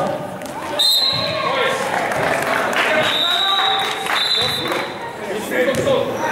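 Referee's whistle blown three times: a short blast about a second in, then two longer blasts about three and four seconds in, stopping play in a basketball game.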